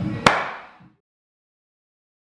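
A single sharp smack about a quarter second in: a fist punched once into the pocket of a leather Rawlings baseball glove.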